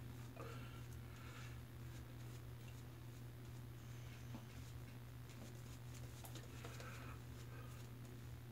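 Faint soft swishing of a shaving brush working lather against the face, in two spells, over a steady low hum.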